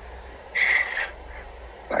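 A short, breathy exhale or hiss of breath lasting about half a second, from a man pausing to think. A spoken word begins just before the end.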